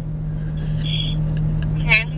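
Car engine idling, a steady low hum heard from inside the cabin, with a voice or laugh starting near the end.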